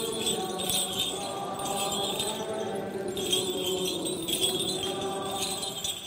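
Congregation chanting a sustained melody, while the small bells on a swinging censer jingle in repeated bursts.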